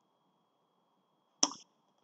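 Near silence, broken once, about one and a half seconds in, by a single short, sharp click-like sound that fades within a quarter of a second.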